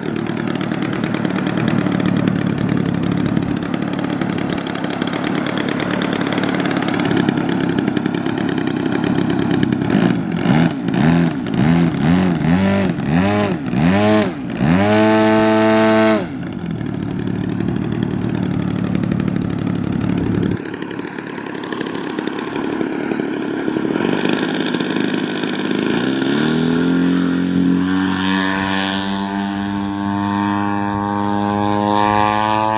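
Large-scale Extreme Flight Extra RC aerobatic plane's engine and propeller idling, then revved up and down several times in quick succession and held at high power for a moment in a run-up. It settles back to idle, then climbs in pitch to full power for the takeoff near the end.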